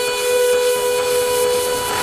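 Trance music breakdown: a sustained synth chord held steady over a hissing wash, with the kick drum and bass dropped out.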